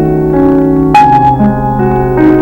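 Solo piano playing a piece: sustained notes and chords, with a new chord struck about a second in.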